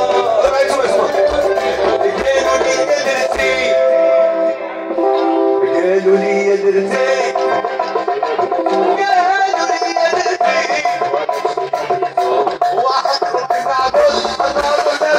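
Live band music amplified on an outdoor stage, with electric guitar, keyboard and drums. A low drum beat runs for the first three or four seconds, then drops out while the melodic instruments carry on.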